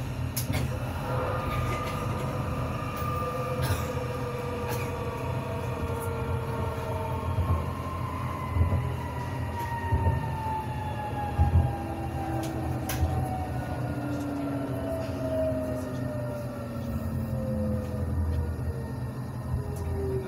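Tram running on its track, heard from inside the vehicle: a steady rumble of wheels on rail and an electric drive whine that falls slowly in pitch as the tram slows. A few sharp clicks come from the track.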